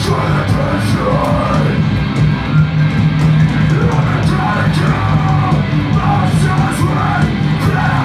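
A heavy metal band playing live: distorted electric guitars over a sustained low bass note, with a drum kit's cymbals struck repeatedly.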